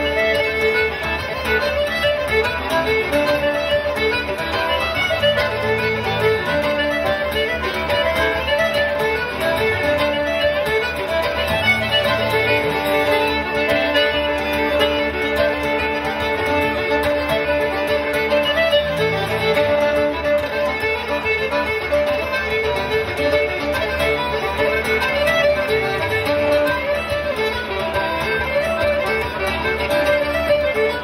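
Live folk tune played together on fiddle, button accordion and acoustic guitar. The fiddle carries the melody over the accordion, with the guitar strumming underneath.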